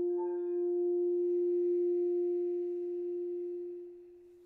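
A singing bowl ringing one steady, sustained tone with faint overtones after a chanted note ends in the first moment. The tone fades away over the last second.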